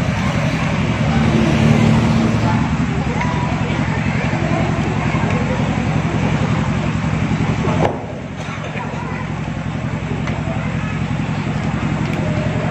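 A steady low engine-like rumble that drops off abruptly about eight seconds in, then carries on more weakly.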